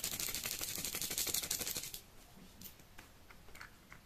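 A small cosmetic bottle, a Technic liquid illuminator, being opened by hand: a quick, even run of fine clicks for about two seconds, then a few scattered ticks.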